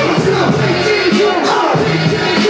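Live hip hop over a club PA: a beat with shouted rap vocals, and the crowd yelling along.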